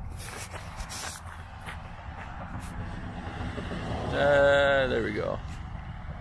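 A man's short vocal sound lasting about a second, about four seconds in, over a steady low rumble.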